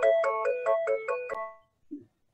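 Phone ringtone: a quick repeating melody of plucked-sounding notes, about six a second, that cuts off with a short ring-out about a second and a half in.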